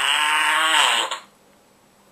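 A man's voice holding one long, wavering, drawn-out vocal sound that breaks off about a second in.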